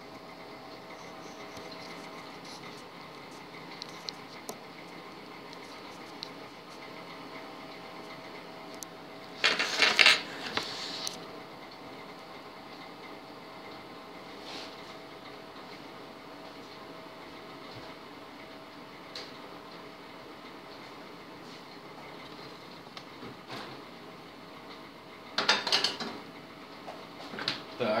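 Samsung microwave oven running mid-cycle with a steady hum. A short loud clatter comes about ten seconds in and another just before the end.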